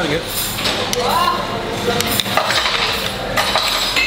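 Metal spoons clinking and scraping against plates while eating, a few short clinks over a busy room's background noise.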